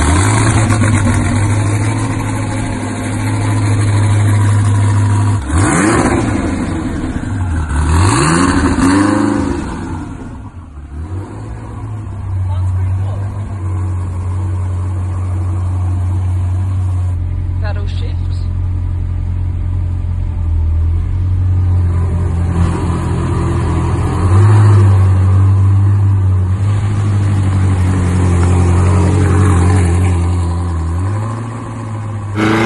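SSC Tuatara's twin-turbo flat-plane-crank V8 running just after start-up: a steady idle, blipped twice, with the revs rising and falling, about six and eight seconds in. It settles back to idle, then grows louder near the end as the car moves off.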